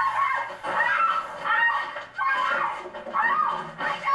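A woman's voice screaming in a series of short, high-pitched cries.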